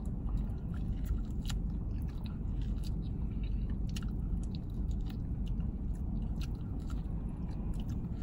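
A man biting and chewing meat off a barbecue rib: irregular small wet clicks and smacks of the mouth, over a steady low hum.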